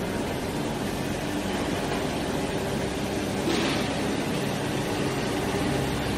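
Steady machinery noise on a steel gas-cylinder factory floor, with a low even hum under it. A brief brighter hiss rises over it about three and a half seconds in.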